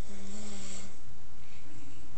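A brief, low, pitched hum lasting under a second near the start, over a steady hiss.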